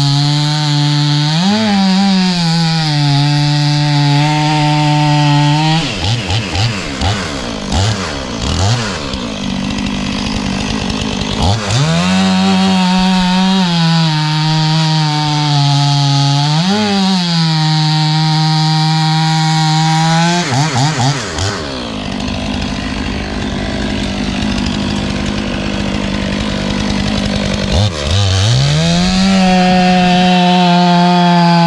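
Stihl two-stroke chainsaw bucking a red oak log into firewood rounds: the engine runs at full throttle under load through long cuts, and the pitch briefly jumps as the load comes off. It eases back to a lower, rougher running twice between cuts, then revs back into the wood near the end.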